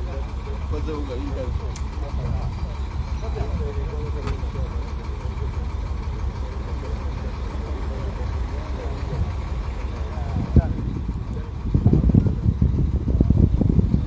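Engine of a heavy armoured police truck running as it rolls slowly past, a steady low rumble, with voices in the background during the first few seconds. Louder ragged bursts of noise come in near the end.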